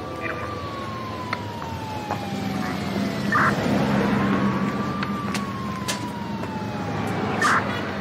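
A siren wailing in two slow rises and falls, over a steady background of street noise.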